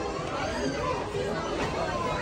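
Background chatter: several people talking at once in a crowded shop, with no single voice standing out.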